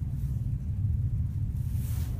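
Steady low rumble of a car ferry's engines heard from inside the ship under way, with a faint hiss swelling briefly near the end.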